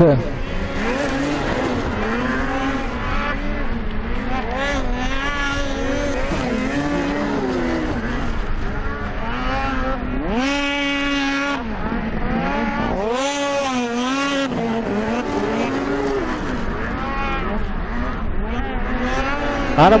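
Racing snowmobile engines revving up and down as the sleds race round a snow track, the pitch rising and falling with the throttle. One sled passes close and loud about ten seconds in, and another about thirteen seconds in.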